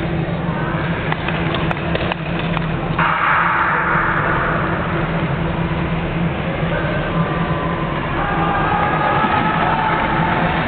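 Steady low hum of a large indoor ice-skating hall, with a few faint clicks early on and a stretch of hissing noise a few seconds in.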